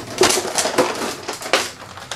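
Clear plastic action-figure packaging being handled and pried open: a rapid, irregular crinkling and crackling of thin plastic.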